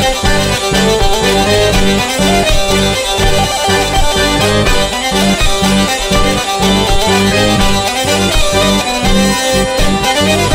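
Hurdy-gurdy and chromatic button accordion (bayan) playing a three-time bourrée together, with a regular pulse in the low notes under the melody.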